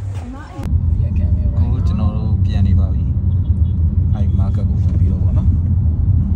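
Steady low rumble inside a car's cabin, the engine and road noise of a car, starting suddenly under a second in after a moment of voices. Faint voices are heard over the rumble.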